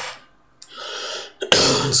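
A man coughs into his fist about one and a half seconds in: a short breathy rush of air, then one sudden harsh cough.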